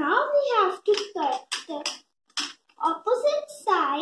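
A young girl talking in short phrases, her words not made out.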